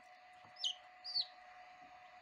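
Newly hatched chicken chick peeping twice, two short high peeps that each drop in pitch, about half a second apart, over a faint steady hum.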